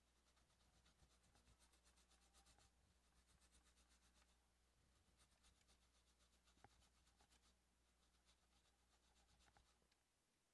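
Near silence: faint, irregular scratchy strokes of a brush scrubbing a corroded graphics card's circuit board, wet with cleaning fluid, over a faint low hum.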